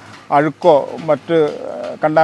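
A man talking in conversation, with a bird, likely a dove, calling behind the voice.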